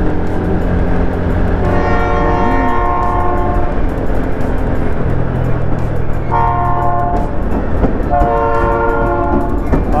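Train horn sounding a multi-tone chord in three blasts: a long one, a short one, then another long one. A steady low drone runs underneath.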